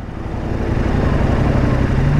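An SUV approaching on the road, its tyre and engine noise swelling steadily, over the low steady idle of the KTM 1090 R's V-twin engine.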